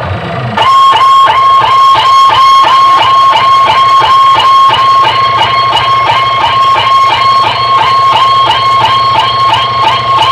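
Loud DJ music from a procession sound system's speaker stacks, starting suddenly about half a second in: a high note repeated fast and evenly over a steady bass line.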